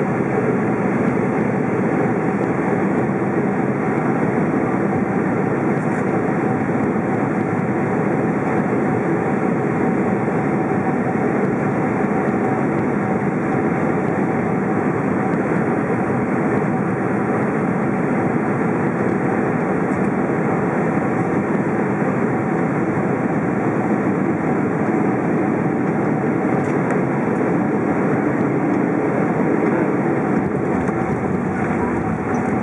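Steady cabin noise of a Boeing 767-400ER on final approach and landing: its General Electric CF6 turbofan engines and the rushing airflow, heard from inside the cabin, holding an even level throughout.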